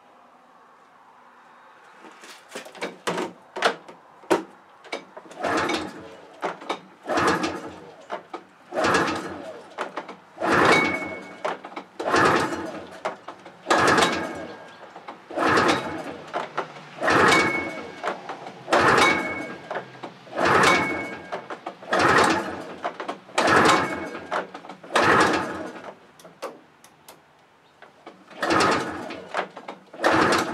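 Recoil pull starter of a 1982 Yamaha Bravo BR250 snowmobile being pulled over and over, roughly once every second and a half, each pull a short rasping whirr of rope and the two-stroke single cranking. The engine never catches, which the owner suspects may be a lack of spark.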